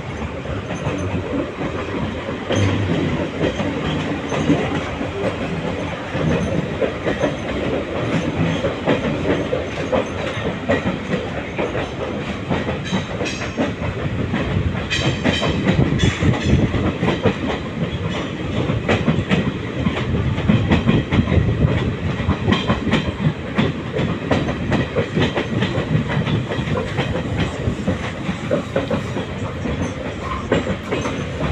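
Passenger train coaches running along the track, heard from an open coach doorway: a steady rumble with wheels clacking over the rail joints. A few short high squeaks come around the middle.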